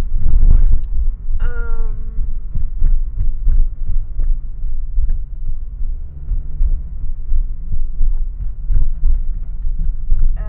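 Low rumble of a car driving, heard from inside the cabin, with frequent small knocks and rattles.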